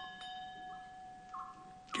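A small metal bell struck once, its ringing tone fading away over about a second and a half, with a faint short chirp repeating about once a second.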